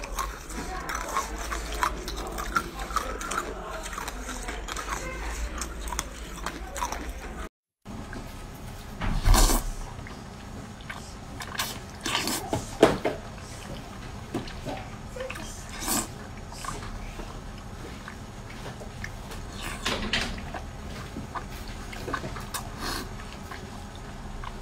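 Close-miked eating: chewing and small clicks from soft green jelly for about seven seconds. After a brief silence, wet smacking and slurping bites of braised pork trotter skin, louder at a few moments.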